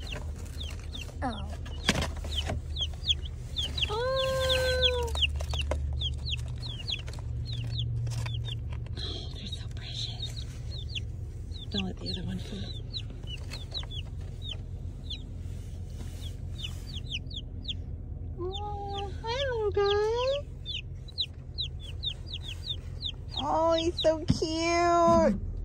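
Three-day-old Buff Orpington chicks peeping rapidly and continuously, short high chirps several a second, from inside a cardboard carrier box. Light rustles and knocks of the cardboard box come in between the chirps, over a low steady hum.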